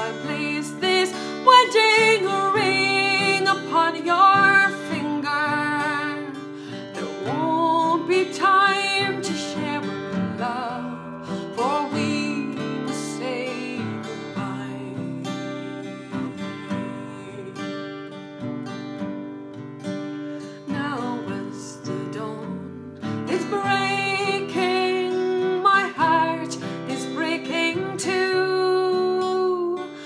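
A woman singing a ballad to her own acoustic guitar, which she strums with a pick. The middle stretch is quieter, with less singing, and the voice comes back fuller near the end.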